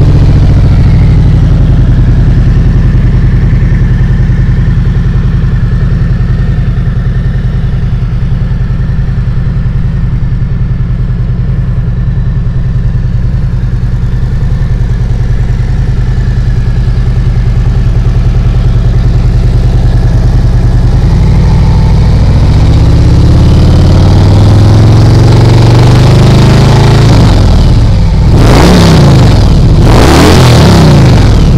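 The 2018 Harley-Davidson Tri-Glide's fuel-injected 107-cubic-inch Milwaukee-Eight V-twin, fitted with aftermarket slip-on mufflers, idles steadily just after start-up. In the last third the throttle is blipped, with several revs rising and falling near the end.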